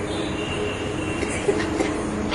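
A steady rumble with faint held tones running under it, and no speech.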